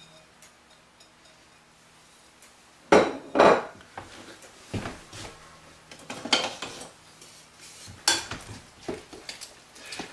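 Kitchen bowls and utensils handled on a countertop. Nearly quiet for the first three seconds, then two loud clunks about half a second apart, followed by scattered lighter knocks and clinks.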